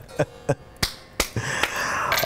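A man laughing breathily: a few short, sharp bursts of breath, then a louder breathy laugh building near the end.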